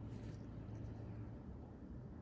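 Quiet room tone: a low steady hum, with a brief faint rustle just after the start.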